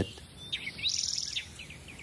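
Birds chirping: a few short high chirps and a rapid high trill about half a second to a second and a half in.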